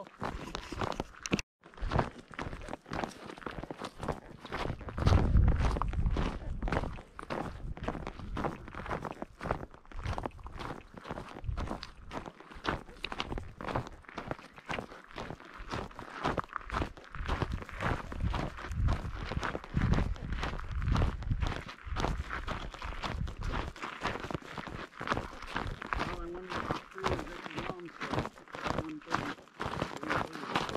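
Hiking boots crunching steadily on a dry, stony dirt trail at walking pace. A low rumble on the microphone comes in about five seconds in and again around twenty seconds in.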